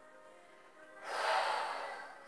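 A long audible breath blown out by a woman, starting about a second in and lasting about a second, as she exhales to relax into a held shoulder stretch. Faint steady background music plays underneath.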